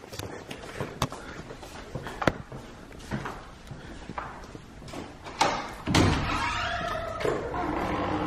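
Footsteps on a tile floor, a sharp click about once a second. Near the end comes a louder clack and rattle as the front door is unlocked and pulled open, and outdoor air noise comes in.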